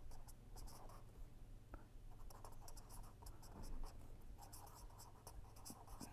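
Pen writing on paper: a run of faint, quick scratching strokes as a word is written out by hand.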